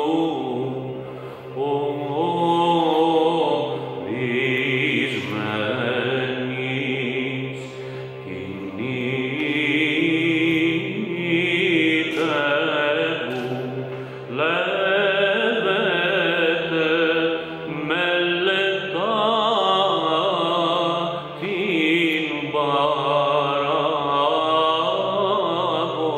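A male Byzantine cantor solo-chanting a slow, heavily ornamented Greek Orthodox hymn melody with vibrato. Under it runs a steady low drone (ison) that moves to a new note a few times.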